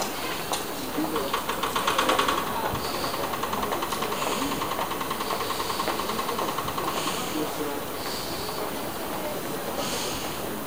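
Rapid, even mechanical pulsing, about seven beats a second, with a steady tone in it, over general railway-platform noise; it builds about a second in and eases off near the end.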